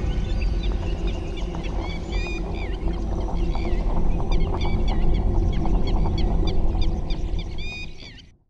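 Birds chirping in quick, repeated calls over a steady low music bed, the soundtrack of an animated channel logo. It starts fading out near the end.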